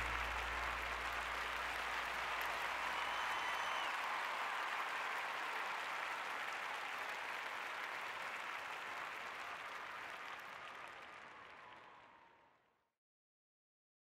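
Audience applauding at the close of a speech, a steady even clapping that fades out about twelve seconds in.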